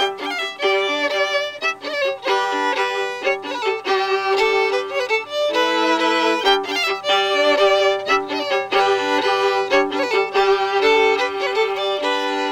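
Two fiddles playing a tune together, quick bowed melody notes over a held lower note.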